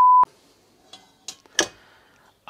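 A loud, steady, high test-tone beep of the kind that goes with TV colour bars, cutting off suddenly about a quarter second in. After it there is only faint sound, with a few small clicks near the middle.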